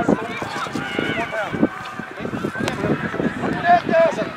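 Several voices calling and shouting across an outdoor football pitch during play, overlapping one another, with one sharp tap about two-thirds of the way through.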